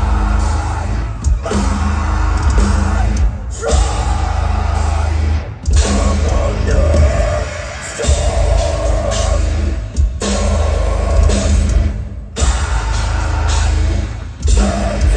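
A metal band playing live at loud volume: heavy drums and down-tuned guitars with a woman singing into a microphone. Several times the whole band stops dead for a split second before crashing back in.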